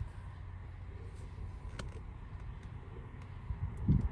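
Steady low outdoor background rumble with a few faint ticks.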